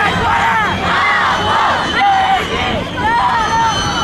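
Crowd of marchers shouting and chanting, many high voices overlapping without a break.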